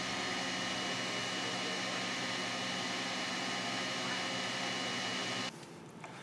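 SainSmart Genmitsu LE5040 laser engraver running as it burns a test pattern into painted plywood: a steady hum and hiss with several constant tones, which cuts off about five and a half seconds in.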